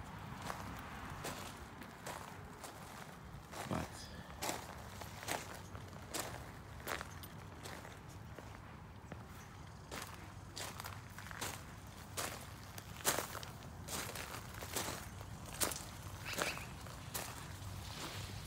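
Footsteps on a gravel path at an unhurried walking pace, a step a little more often than once a second, with a short break near the middle.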